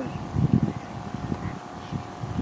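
Wind buffeting the microphone in irregular low rumbling gusts, over a faint steady hum.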